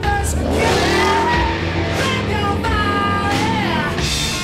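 Rock music with a car engine revving under it, the engine's pitch climbing from about half a second in.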